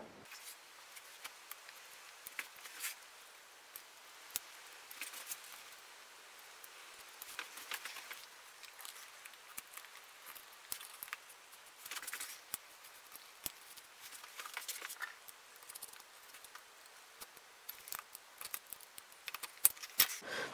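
Stanley utility knife blade scoring the wood around a bowtie inlay's outline: faint, irregular scratches with light clicks.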